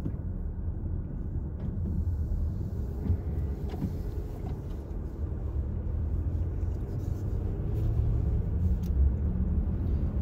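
Inside the cabin of a 2023 Honda Pilot driving on a snow-covered road: a steady low rumble of road and tire noise from Michelin X-Ice Snow SUV snow tires, with a few faint rattles from a dash phone mount.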